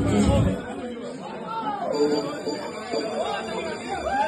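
Several people talking over one another in indistinct chatter. Loud music stops about half a second in.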